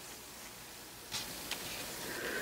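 Quiet room tone, a faint steady hiss, with a light click about a second in and a fainter one shortly after.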